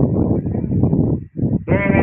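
Wind buffeting the microphone: a loud, rough rumble that drops out for a moment past the middle. Near the end comes a short, high, wavering call.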